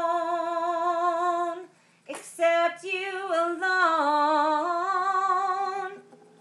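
A woman singing unaccompanied: she holds a long, steady note, breaks off for a breath just under two seconds in, then sings a sliding line with a wavering vibrato that dips and rises before it fades near the end.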